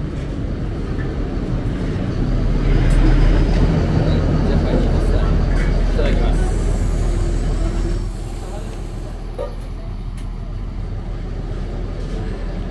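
A bus engine running close by, a low rumble that grows louder about two seconds in and falls away about eight seconds in.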